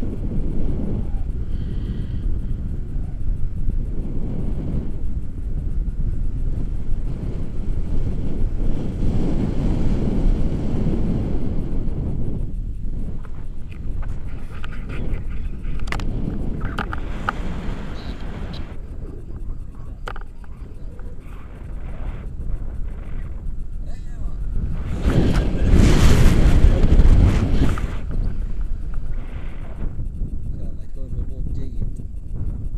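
Wind buffeting a pole-held action camera's microphone in tandem paraglider flight: a steady low rumble, with a stronger gust about 25 seconds in that lasts a few seconds.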